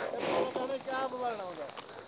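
A chorus of insects, cricket-like, keeps up a steady high-pitched drone from the roadside grass and scrub. A faint, distant voice is heard through the middle of it.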